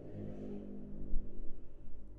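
A low steady hum, with a soft low bump about halfway through.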